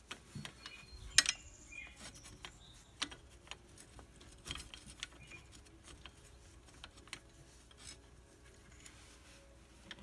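Small metallic clicks and taps as a brake caliper with new pads is handled and worked into position over the rotor. The sharpest click comes about a second in.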